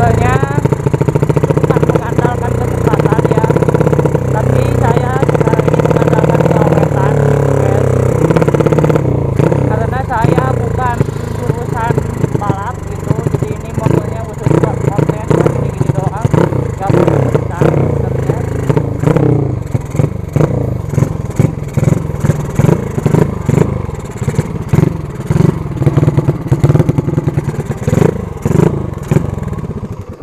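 150cc drag-bike motorcycle engine running loud under way, steady at first. From about nine seconds in it turns choppy, with repeated sharp throttle blips and drops as the bike slows and comes to a stop.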